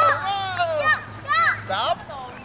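Young children's excited, high-pitched voices: a drawn-out falling call, then short squeals about half a second apart.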